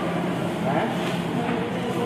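Steady background noise with indistinct voices in it.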